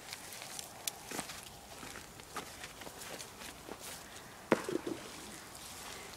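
Slow footsteps in sandals on grass and dry, clayey soil: soft scuffs and crunches of vegetation underfoot, with one louder short noise about four and a half seconds in.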